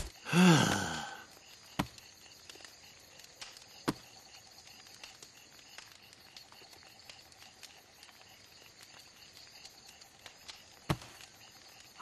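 A long sigh, then a faint night ambience of chirping crickets, broken by three short, sharp clicks, the last near the end.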